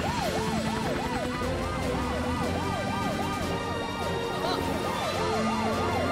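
Emergency-vehicle sirens of the animated rescue cars, wailing in a quick rising-and-falling sweep about three times a second, with a second siren overlapping at times.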